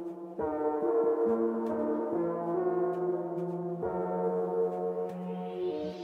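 Background music made of sustained, gong-like ringing tones, struck afresh about half a second in and again near four seconds. A rising whooshing sweep builds over the last second.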